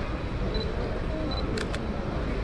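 Canon EOS M100 mirrorless camera's shutter firing once, a quick double click about three quarters of the way through, over steady background noise.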